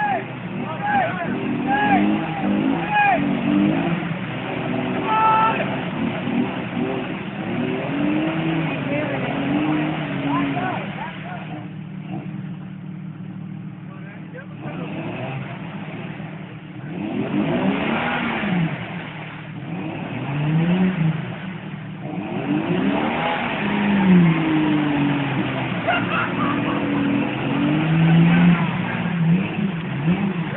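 Lifted Jeep Cherokee XJ's engine revving up and down again and again as it pushes through a deep mud bog. It eases off for a few seconds midway, then surges with louder spells of churning noise.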